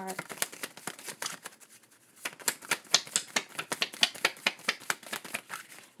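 A deck of chakra oracle cards being shuffled by hand: a rapid run of light card clicks that thins out briefly, then comes back faster and louder, stopping just before the end.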